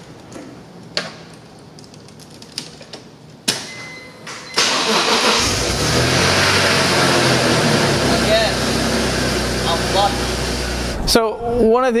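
BMW E46 M3's S54 straight-six being started: after a few small clicks and a sharper click, the engine catches about four and a half seconds in and runs steadily until the sound breaks off shortly before the end.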